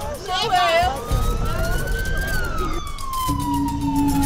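An emergency vehicle's siren sounding one slow wail, rising for about a second and then falling away. It follows a person's distressed shouting at the start, and a low steady music tone comes in near the end.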